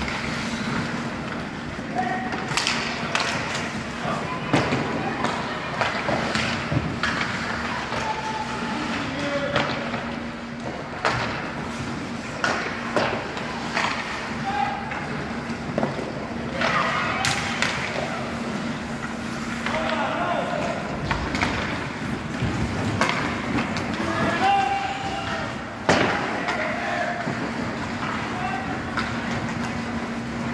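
Ice hockey play on an indoor rink: skates scraping on the ice and repeated sharp clacks and thuds of sticks, puck and boards, with one louder knock late on. Players' voices call out over a steady low hum.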